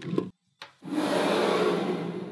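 Small magnetic balls clicking briefly, then a steady gritty rasp starting about a second in as blocks of magnet balls are slid and pressed against one another.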